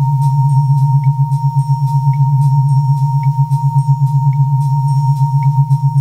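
Synthesizer music: a loud, rapidly pulsing low synth drone under a steady high sine-like tone, with a short high blip about once a second.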